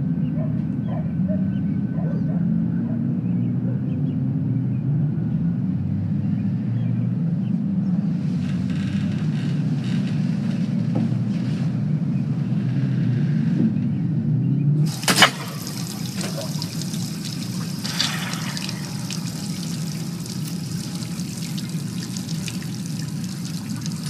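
A steady low hum throughout. About fifteen seconds in, a sharp click is followed by a steady hiss of running water, with a fainter hiss coming and going before it.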